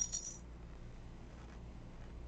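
A brief, faint crunch of a baked corn-flour snack twist being bitten, a few small crisp clicks in the first half second. After that only a faint steady low hum.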